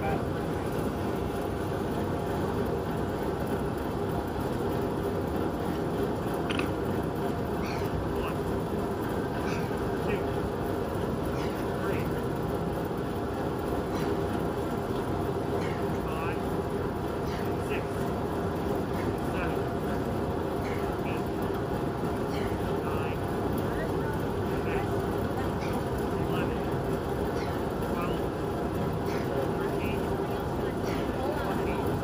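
Large drum fan running with a steady whooshing hum. Short, faint high chirps come and go over it from about six seconds in.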